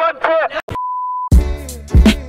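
Chanting voices cut off, followed by a single steady electronic bleep lasting about half a second. Then hip hop music with a heavy beat starts.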